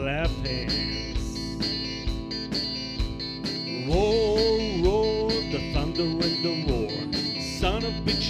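Live rock band playing an instrumental passage: electric guitar with sliding, bending notes over drums, bass and keyboard, the guitar line rising and falling about halfway through.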